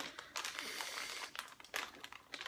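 Plastic packaging of a pack of mini muffins crinkling and rustling as it is handled, with a few sharp clicks.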